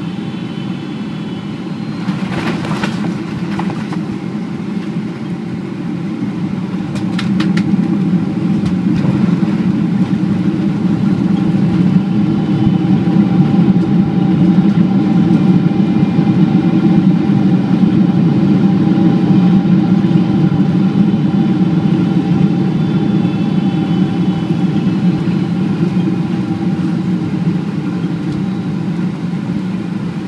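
Boeing 777-300ER cabin sound during a hard landing: a jolt of touchdown about two seconds in and another about seven seconds in. The GE90 engines' roar then rises as reverse thrust comes in, stays loud for about ten seconds, and eases off near the end as the jet slows on the runway.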